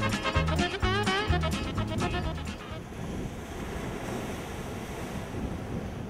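Upbeat swing-style chase music that stops about three seconds in, leaving the steady wash of ocean surf breaking on rocks.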